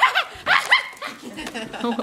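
Girls' voices: short, high-pitched exclamations with rising pitch, one right at the start and another under a second in, with quieter murmur between.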